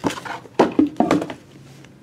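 Cardboard trading-card box being opened and its contents handled: a few short scrapes and knocks in the first second, then quieter rustling.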